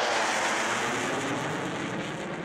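Jet flyby sound effect: a rushing jet noise that fades away slowly.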